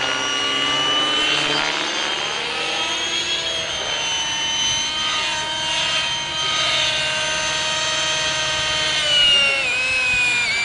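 Radio-controlled helicopter in flight: a steady high-pitched whine from its rotor and drive that shifts a little in pitch as it manoeuvres, then drops and wavers near the end.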